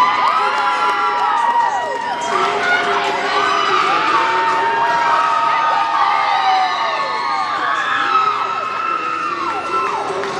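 A crowd of spectators cheering, with many high-pitched whoops and shouts overlapping.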